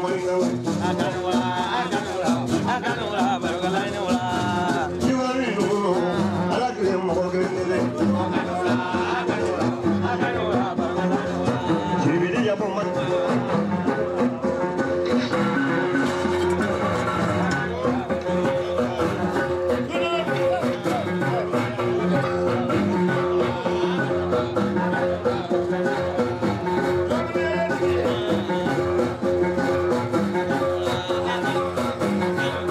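Malian donso foli (hunters' music): a plucked donso ngoni harp-lute with a calabash resonator playing a steady repeating pattern, with a voice singing or chanting over it.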